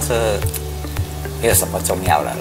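A man speaking Chinese over background music with a steady beat of about two pulses a second.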